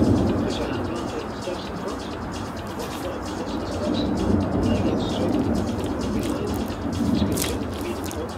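Outdoor yard ambience with a steady rush and birds chirping, with a soft knock about seven seconds in as a stack of empty cardboard boxes is set down and leaned on.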